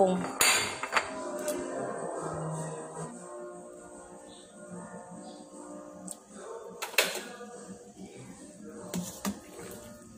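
Kitchen utensils and dishes being handled: a clatter about half a second in and a sharp clink about seven seconds in, over steady background music.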